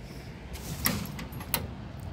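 Two short clicks about two-thirds of a second apart over a steady low rumble: the push button of a dry outdoor drinking fountain being pressed, with no water coming out.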